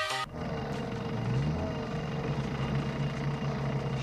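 Background music that cuts off abruptly just after the start, followed by a steady low rumble with a brief rising tone about a second and a half in.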